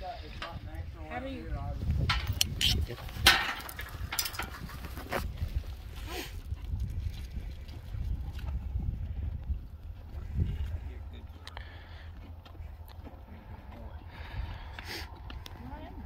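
A metal pipe corral gate being shut, giving a few sharp knocks and clanks in the first several seconds. Wind rumbles on the microphone throughout, and faint low voices come and go.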